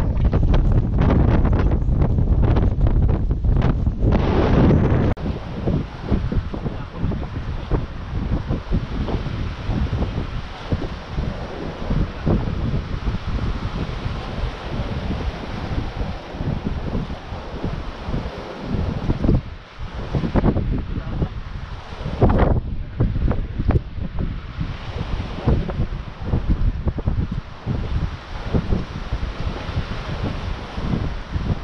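Wind buffeting the microphone, strongest for the first five seconds and then coming in lighter, uneven gusts.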